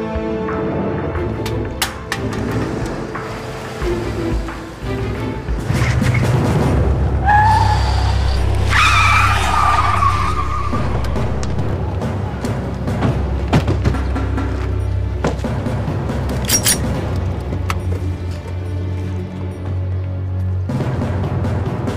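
Car tyres squealing in a hard skid, starting about seven seconds in and lasting a few seconds, over a steady low engine rumble and tense dramatic music.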